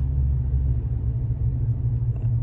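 Steady low rumble of road and engine noise heard inside the cab of a moving vehicle.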